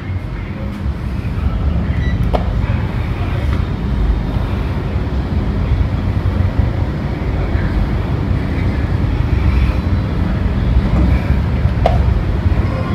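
Steady low rumble in a lift lobby while a called lift is awaited, with a few light clicks; just before the end a click comes as the lift's stainless-steel doors start to slide open.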